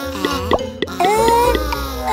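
Playful cartoon background music with sliding pitched tones, short click-like sound effects, and wordless cartoon-character vocal noises.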